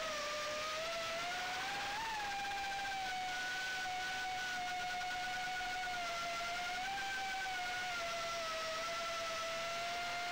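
Diatone GT-R349 quadcopter's motors and propellers whining in flight. A single steady tone with overtones swells up briefly about two seconds in and again near seven seconds, then dips slightly.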